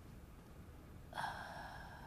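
A woman sipping a hot drink from a cup: a short, breathy slurp that starts suddenly about a second in and lasts about a second.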